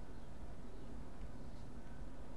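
Steady, faint low background hum and hiss of room tone, with no distinct sound events.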